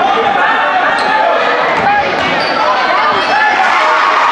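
Basketball game in a school gym: many spectators and players talking and calling out over one another, with a basketball bouncing on the hardwood floor.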